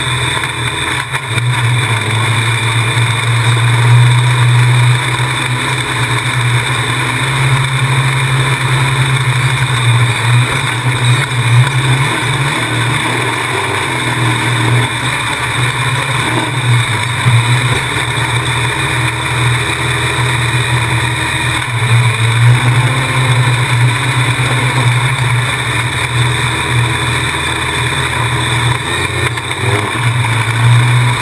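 Open-wheel dirt race car engine running hard at racing speed, heard onboard close to the car. Its level swells and eases repeatedly as the throttle is lifted and reapplied through the turns.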